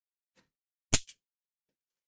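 A single sharp snap about a second in, followed at once by a fainter click, as a clear plastic bag of kit parts is pulled open.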